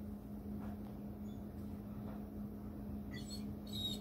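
Faint, high squeaky mews from a cat near the end, over a steady low hum.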